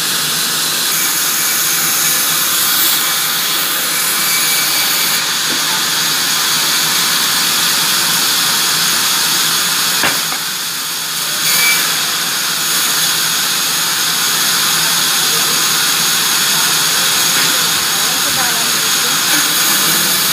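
Large sawmill band saw running and cutting timber: a loud, steady, high hiss from the blade, briefly easing off about ten seconds in.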